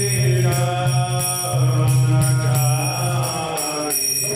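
Devotional mantra chanting: a voice sings gliding, held notes over a steady low drone, with steady high ringing tones above.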